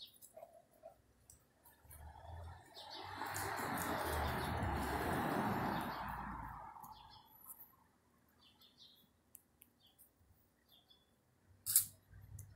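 A vehicle passing on the street, its rushing noise swelling and then fading over about five seconds, with a few faint short bird chirps.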